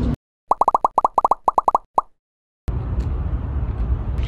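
Editing transition sound effect: a rapid run of about fifteen short, bright pops in quick succession, with a last lone pop about two seconds in, set between stretches of dead silence. Near the end a steady low outdoor background noise comes in.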